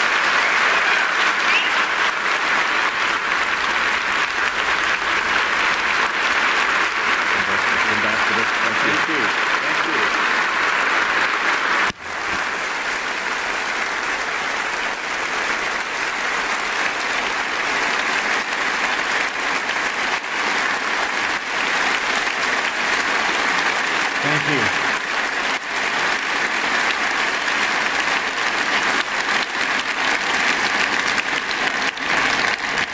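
A large congregation applauding in a long, steady ovation, with a brief sudden drop about twelve seconds in.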